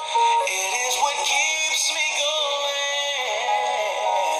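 A man singing a love song, holding long notes and stepping from one pitch to the next, with a wavering held note about three seconds in.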